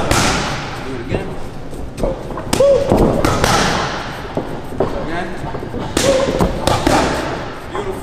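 Boxing gloves punching leather focus mitts: a few sharp smacks, one at the start, a pair about a third of the way in and a quick cluster about three-quarters through, each with a short echoing tail.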